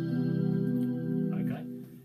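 Skervesen electric guitar played through a Fractal Axe-FX, ringing an open C major 7 chord (C, E, G, B), the plain C major shape with the first finger lifted. The chord is struck just before and sustains, fading away about one and a half seconds in.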